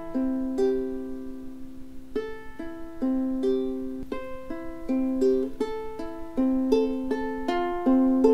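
Ukulele fingerpicked in a descending arpeggio: each chord's four strings are plucked one at a time, from the first string to the fourth, and each note rings on. The pattern repeats across several changing chords.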